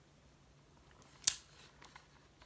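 A single sharp snip about a second in, then a couple of faint clicks: a blade cutting into a plastic clamshell package.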